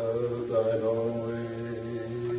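A low, drawn-out chanted tone, a voice holding one steady pitch like a mantra.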